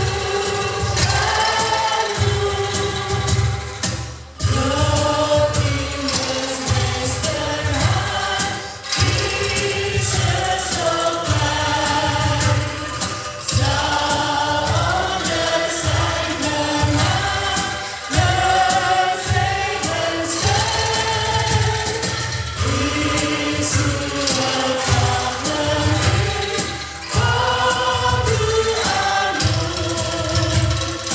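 A mixed choir singing a hymn, led by three women singing into microphones, phrase after phrase with brief breaths between lines.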